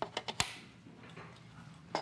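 Plastic legs of a knitting loom snapping into its rotating base: about four sharp clicks within the first half second, the last the loudest.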